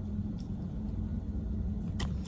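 Steady low rumble of background noise, with a couple of faint ticks.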